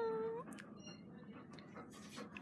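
A dog's short whine right at the start: one steady high note of about half a second that rises at the end.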